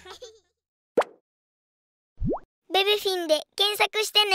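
Animated end-card sound effects: a short pop about a second in, then a quick upward-sweeping whistle-like glide. After them, a high-pitched cartoon baby voice speaks a few short phrases near the end.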